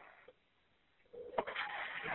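Phone-line audio of a 911 call: about a second of near silence, then a faint, muffled voice-like sound on the line with a sharp click.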